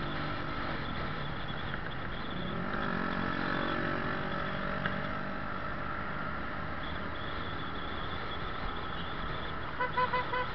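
Motor scooter ridden through city traffic: steady engine and road noise, with an engine note that rises and falls about three seconds in. A horn gives a quick series of short beeps at the very end.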